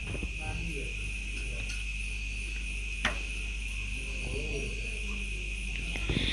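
Steady high-pitched insect trilling, like crickets, that runs on without a break. There is one sharp click about three seconds in.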